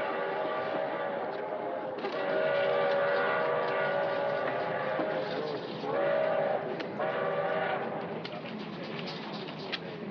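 A passenger train running with a steady rumble, overlaid by held chord-like tones: a long one from about two to five seconds in, then two short ones around six and seven seconds.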